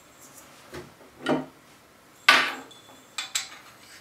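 Handling noise from a security camera's mounting base and wall plate being fitted together: a few knocks and clicks, the loudest a sharp clack just over two seconds in.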